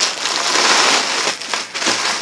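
A thin plastic bag rustling and crinkling as it is pulled off a soundbar in a cloth bag, without a break.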